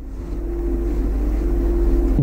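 A low machine rumble with a steady hum on top, growing gradually louder.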